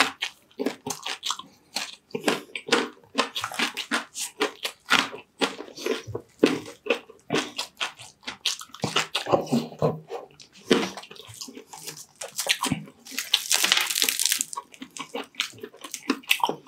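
Close-miked eating sounds of crispy deep-fried pork mesentery (chicharon bulaklak) and rice: crunching, chewing and wet mouth and finger smacks, a steady run of quick clicks. Near the end a denser, hissing crackle lasts about a second.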